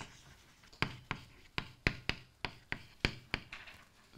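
Chalk writing on a blackboard: a quick run of about a dozen short, sharp taps as the chalk strikes and strokes across the board, starting about a second in.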